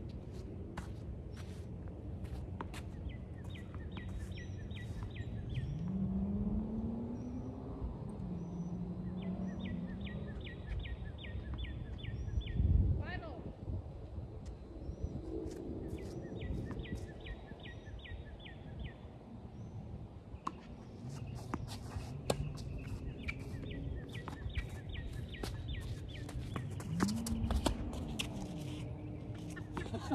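A tennis ball being hit back and forth on an outdoor court, with one loud hit about thirteen seconds in and scattered sharper ticks. Behind it, short trains of rapid high chirps repeat every few seconds. A voice gives a short rising call twice.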